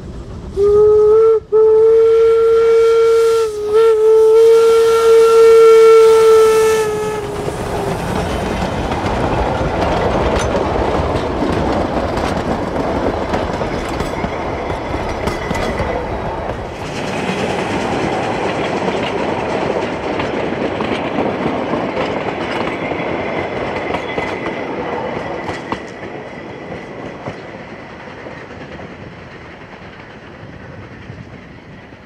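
Steam locomotive whistle of the 1875 wood-burning engines Eureka and Glenbrook: one long blast on a single steady pitch, broken twice very briefly, lasting about seven seconds. Then the train rolls past with steady rumble and rail clatter that fades away over the last few seconds.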